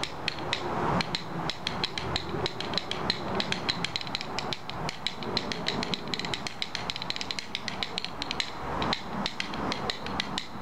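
Two pairs of buffalo-rib rhythm bones, one pair in each hand, clacking in a fast, steady run of sharp clicks, many to the second, struck by twisting the wrists.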